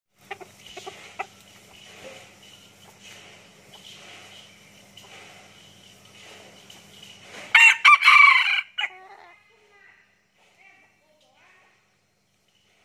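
An F2 captive-bred red junglefowl rooster crowing once, about seven and a half seconds in, a short loud crow with a clipped ending. A few faint short calls follow. Before the crow there is only faint background noise with a few light clicks.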